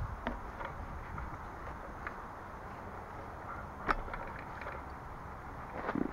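Quiet outdoor background: a steady low hiss and rumble with a few faint clicks and taps, the sharpest about four seconds in.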